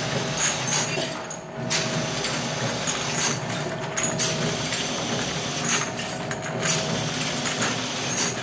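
Two-nozzle ampoule filling and sealing machine running, its moving parts and glass ampoules making a steady mechanical clatter. The noise rises and falls in a cycle of about every two to three seconds.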